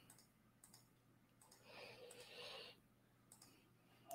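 Near silence, with a few faint computer-mouse clicks as comments are scrolled through, a little louder about halfway through.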